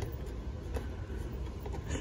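Low, steady background rumble of room noise, with a couple of faint clicks.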